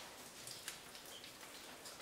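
Very faint, steady hiss with a few scattered light ticks, close to silence.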